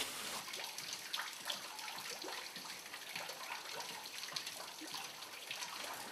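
Faint, steady trickle of water with small scattered drips, falling from the brick vault of an old sewer tunnel.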